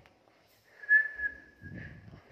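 A single steady high whistle-like tone lasting just over a second, loudest at its start, with a brief low rumble near its end.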